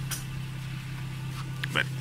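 Lexus IS200's Toyota 1G-FE straight-six engine idling smoothly and steadily, running on a freshly installed Speeduino standalone ECU.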